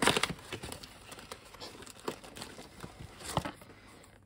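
A cardboard software box being opened and a frosted plastic cartridge case slid out of it: rustling and scraping of card with small clicks. The loudest scrape is at the very start, with another sharp one about three and a half seconds in.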